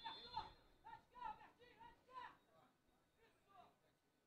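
Faint voices talking, low in level, dying away in the last second or so.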